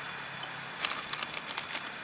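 A few faint light clicks and rustles from a plastic bag of wax pieces being handled over a pot, over a steady background hiss.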